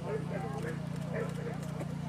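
Hoofbeats of a thoroughbred horse cantering on grass after a jump, with people talking in the background over a steady low hum.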